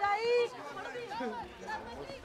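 Several people's voices chattering and calling out, with one loud, drawn-out shout in the first half-second.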